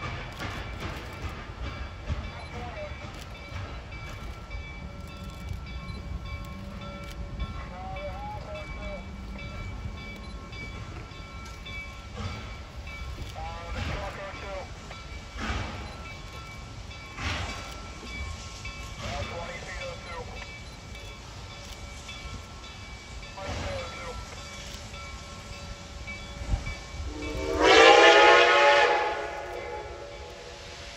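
Reading & Northern 2102, a 4-8-4 steam locomotive, working with a low, steady rumble. Near the end it sounds its steam whistle in one long, loud blast lasting about two seconds.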